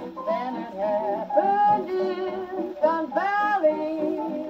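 A 1941 big-band swing 78 rpm shellac record playing through an acoustic gramophone's soundbox and horn: the band with voices carrying a wavering melody, thin-sounding with little bass.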